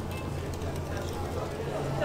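Supermarket background sound: a steady low hum with faint chatter and background music, and no close sound event standing out.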